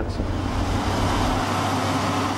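Snowcat grooming machine running steadily: a low engine drone under an even hiss.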